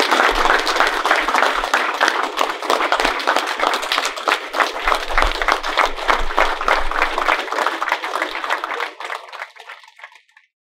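Audience applauding, many hands clapping steadily, then fading away near the end.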